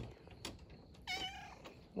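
A grey tabby domestic cat meows once about a second in: a short high call that falls in pitch.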